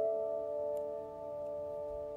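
Electronic keyboard holding a sustained chord of several notes that rings on and slowly fades.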